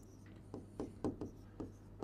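Stylus writing on an interactive whiteboard screen: a run of faint, short taps and scratches, about seven of them, as the letters are stroked out.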